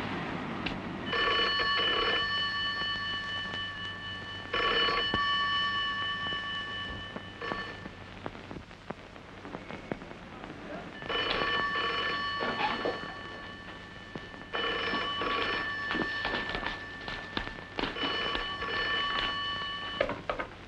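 A telephone bell ringing repeatedly for an incoming call that goes unanswered for a while: long spells of ringing with a pause of about three seconds in the middle.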